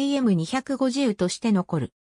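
A synthesized voice reading Japanese text, stopping just before the end.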